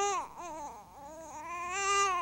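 A baby crying: one wail tails off just after the start, then a long wail rises to its loudest near the end.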